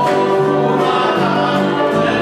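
A congregation singing a gospel hymn together, many voices on held notes with an instrument accompanying.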